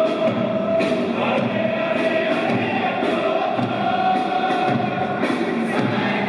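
Stadium crowd of football supporters singing together in unison, with occasional drumbeats, at steady volume.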